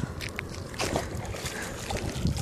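A dog paddling through shallow lake water, splashing and sloshing, with a stronger splash about a second in as it reaches the shore. Wind rumbles on the microphone.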